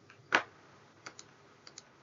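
Computer keyboard keys pressed: one sharp keystroke, then two quick pairs of lighter clicks.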